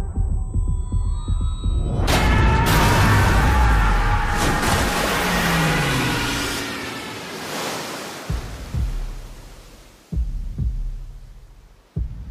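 Muffled underwater rumble, then a loud aircraft roar that bursts in about two seconds in, its tones sliding downward as it passes and fading away. In the last few seconds a low double thump repeats about every two seconds like a heartbeat, part of the music score.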